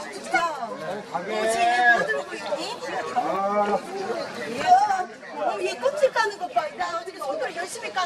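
Background chatter: several people's voices talking over one another, with no clear words.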